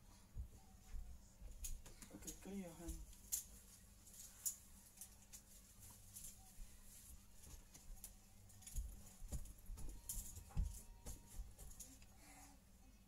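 Faint, scattered soft clicks and taps, with low thumps, as a spoon and plate are handled. About two and a half seconds in there is a short wavering vocal sound.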